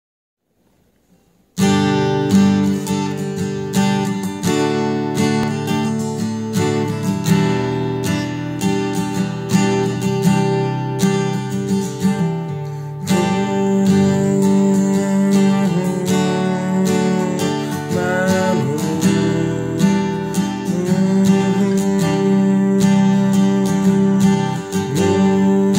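An acoustic guitar strumming chords, starting after about a second and a half of silence and carrying on in a steady rhythm: the song's intro.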